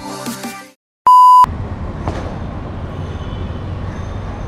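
Background music fades out, then after a brief silence a loud, steady electronic beep sounds for under half a second. It is followed by steady city street traffic noise.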